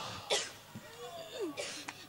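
A woman coughs once, briefly, about a third of a second in; faint voices follow.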